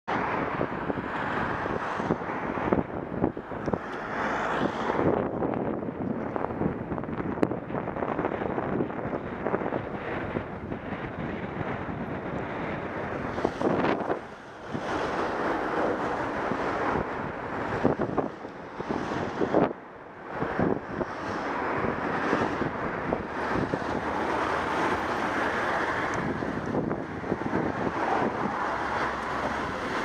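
Wind rushing over a bicycle-mounted camera's microphone while riding in traffic, mixed with road and engine noise from vehicles alongside. The rush drops briefly about 14 and 20 seconds in.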